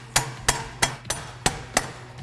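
Red soft-face mallet tapping the brake rotor assembly along a sprint car rear axle, about six sharp blows at roughly three a second, to shift the rotor, which sits too far in, back out until it centres in the caliper.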